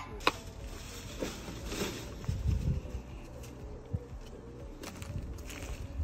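Debris being handled and shifted in a cluttered garage doorway: a sharp click near the start, then scattered light knocks and rustles over a low rumble.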